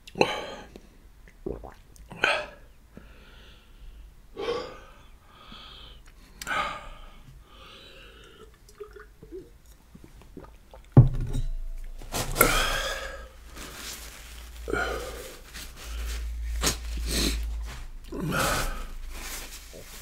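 A man breathing hard in short, sharp puffs and sniffs while reacting to the heat of spicy kimchi noodle soup. About eleven seconds in there is one sharp knock, and the puffing grows denser afterwards.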